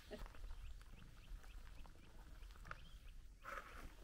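Faint small-bird chirping, short high chirps repeated about four times a second, then a scuffing footstep on gravel near the end.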